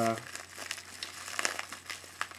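Clear plastic zip-top bag crinkling and crackling in irregular bursts as it is handled and worked open by hand.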